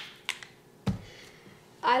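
A small paint bottle set down on a tabletop: a couple of faint clicks, then one sharp knock just under a second in.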